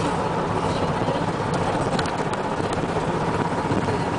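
Steady engine and road noise of a moving car, heard from inside the cabin.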